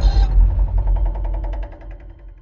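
Low, deep rumble, the tail of a boom-like film sound effect, with a brief hiss at the start and a fast fluttering pulse, fading away over about two seconds.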